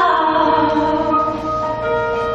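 Large choir singing with band accompaniment, holding long sustained notes that change to new ones near the end.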